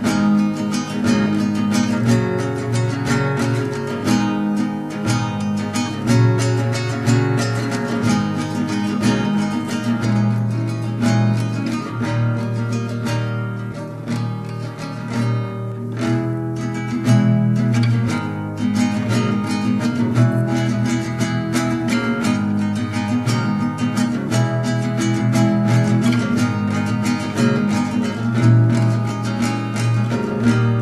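Background music: acoustic guitar, plucked and strummed, playing steadily.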